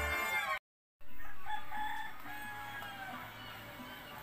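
Salsa music cuts off half a second in. After a brief silence, a rooster crows once: a long call that starts loud and trails off over about two seconds.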